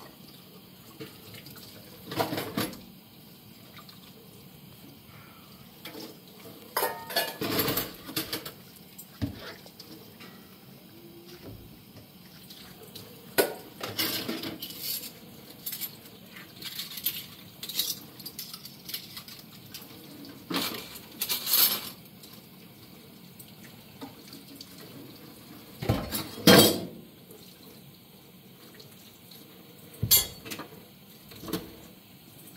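Dishes and cutlery clinking and clattering against each other and the stainless steel sink as they are washed by hand. The knocks come in irregular bursts every few seconds, and the loudest comes near the end.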